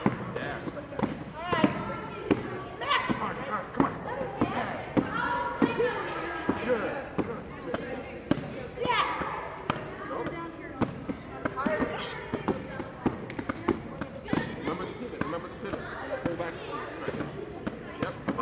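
Repeated, irregular thuds of fists punching a padded vinyl strike shield, over the chatter of children's voices.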